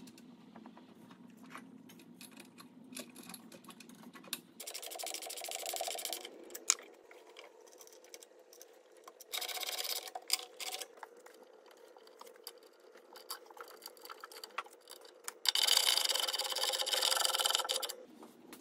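Socket ratchet wrench clicking in three spells of a second or two each, about five, nine and fifteen seconds in, as it tightens a lock nut on a bolt through a rubber vibration mount.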